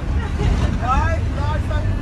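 Steady low engine and road rumble inside a moving bus, with a voice sounding briefly about half a second in.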